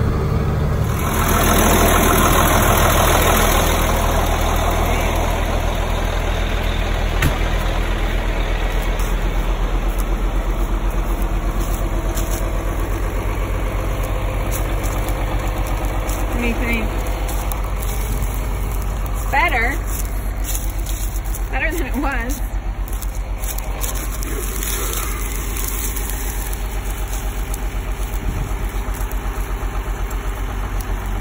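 Tractor engine idling steadily, with a few short gliding calls or voice sounds near the middle.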